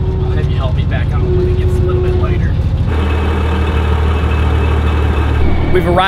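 Large truck engine running, with music over it in the first half. About halfway through, the sound changes to a truck engine idling steadily, a low, even drone.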